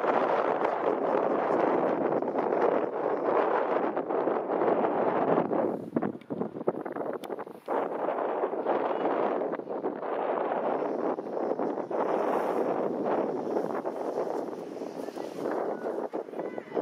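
Wind buffeting the camera microphone: a steady rushing noise that rises and falls in gusts, easing briefly about six seconds in.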